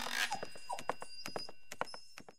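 Small dog giving a few short yips over quick light ticking steps, the sound fading out near the end.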